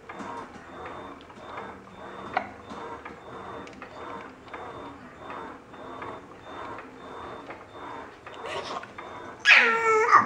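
Baby making soft, rhythmic sounds about twice a second. Near the end she breaks into a loud, high-pitched squealing laugh that falls in pitch.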